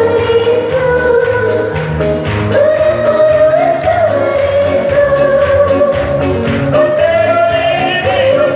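Congregational worship singing: one sung melody of long held notes over a low, steadily changing accompaniment.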